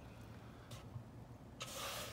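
A hand rubbing across the wooden roof of a birdhouse, a short scraping noise near the end, after a single faint tap about a second in. A low steady hum sits underneath.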